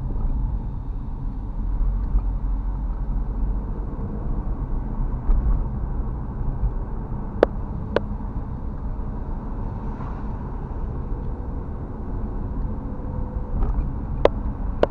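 Steady low rumble and tyre noise inside a moving car driving on wet asphalt, heard through a dashcam microphone. Two sharp clicks half a second apart about halfway through.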